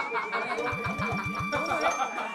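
An edited-in comic sound effect under people's voices: a high, wavering whistle-like tone holds steady, and a quick run of about eight low pulses sounds in the middle.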